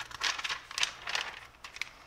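A paper catalog page being turned over and laid flat: two papery rustles in the first second, then a few light ticks near the end.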